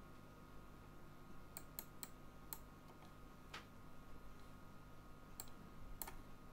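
Six faint, scattered clicks of a computer mouse over a low, steady electrical hum. The clicks start about one and a half seconds in, several in quick succession, then two spaced further apart.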